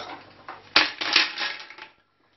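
Mussels dropped into an empty stainless-steel pot, their shells clattering against the metal and each other: one loud clatter about three-quarters of a second in, then a few smaller rattles that fade.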